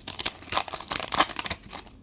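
Foil hockey-card pack wrapper being torn open and crinkled by hand: a dense run of irregular crackles and rustles that dies away near the end.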